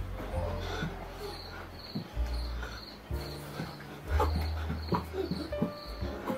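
Recorded dance song playing, with a deep bass line and a short high chirp repeating about twice a second.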